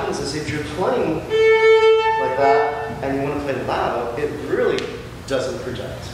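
Viola playing a slow, lyrical melodic line, with one long held note about a second and a half in. A man's voice talks over the playing.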